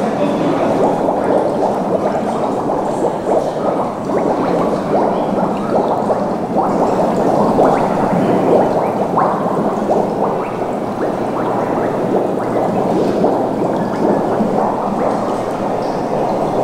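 Mud Muse, a large metal tank of bentonite clay mixed with water, bubbling and gurgling as air is released through the mud. It makes a steady thick bubbling with many small pops. The air bursts respond to the sound levels of the bubbling itself.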